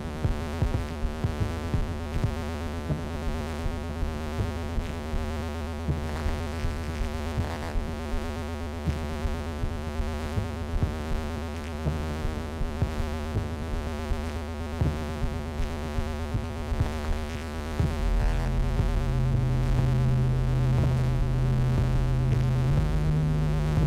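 Improvised live jam on analog synthesizers, keyboard and modular synth: layered drones over a steady low bass. Near the end a louder, deeper bass note comes in and the whole sound gets louder.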